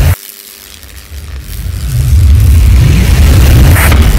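Cinematic sound effects for an animated logo intro: a deep booming rumble cuts off abruptly just after the start, then swells back up over the next two seconds and stays loud, with a sharp crackling burst near the end in time with the lightning animation.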